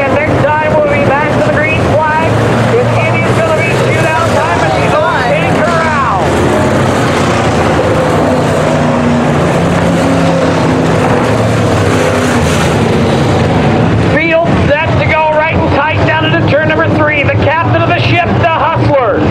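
A field of dirt-track Modified race cars running hard, with many engines overlapping and their notes wavering up and down as the cars pass. The sound is steadier and lower through the middle of the stretch.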